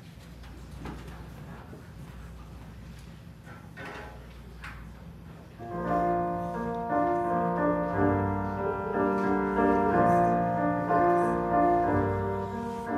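Low room noise with faint rustling and small knocks, then about halfway in a digital keyboard starts playing sustained piano chords with low bass notes. The chords are the instrumental introduction to a congregational song.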